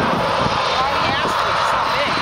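A Boeing 737-800's CFM56 jet engines running as the airliner rolls out down the runway after landing: a steady rushing noise heard from a distance. Faint voices are mixed in.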